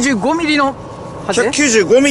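Speech in Japanese: two short spoken phrases with a brief pause between them.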